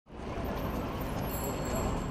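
Steady hum of distant city traffic, fading in at the start.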